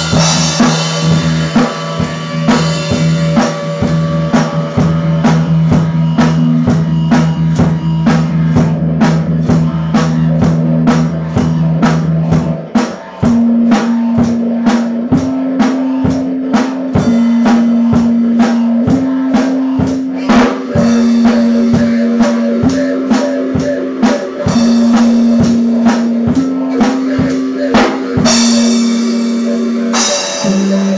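Instrumental band music: a drum kit plays a steady beat with bass drum over guitar and a low held note. About halfway through, the low part switches to a line stepping back and forth between two higher notes, and a cymbal crash comes near the end.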